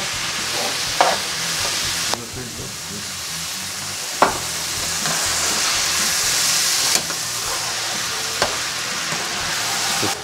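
Minced veal with dark soy sauce sizzling steadily in a hot frying pan as it is stirred with a spatula, with a few sharp clicks of the spatula against the pan.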